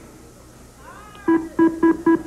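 The Price is Right Big Wheel spinning, with its electronic tone sounding as a run of identical short beeps, about four a second, starting a little past halfway through.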